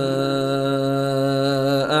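Chanted Quran recitation: the reciter's voice holds one long, steady note on a drawn-out vowel, breaking off near the end.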